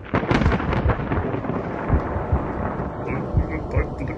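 A sudden loud crackling rumble at the start that dies away over a second or two into a low steady rumble.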